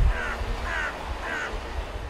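A bird calling three times, short calls evenly spaced about half a second apart.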